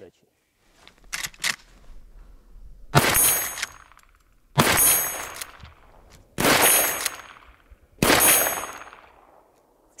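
Four shots from a Marlin lever-action rifle in .45-70 Government, about a second and a half to two seconds apart as the lever is worked between them, each followed by a short echo. A few light clicks come about a second in, before the first shot.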